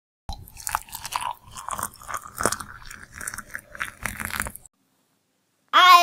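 Water being poured into a mug of coffee: an uneven pour lasting about four seconds that stops short. A sung jingle starts just before the end.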